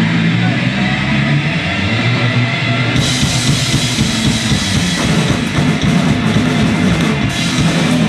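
Live punk rock band playing loud: distorted electric guitars, bass and drum kit. The sound turns sharply brighter and fuller about three seconds in.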